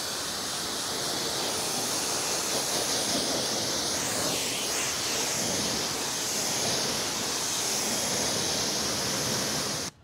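Pressure-washer jet rinsing rock and grit off a car wheel: a steady hiss of spray that cuts off suddenly just before the end.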